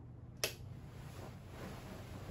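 A wall light switch clicks once, sharply, about half a second in, turning the light off. Faint rustling of a duvet follows.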